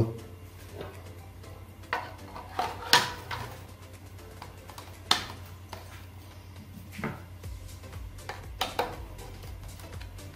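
Scattered sharp plastic knocks and clicks, about seven, as a stand fan's plastic motor cover is handled and fitted back over the motor. The sharpest come about three and five seconds in, over quiet background music.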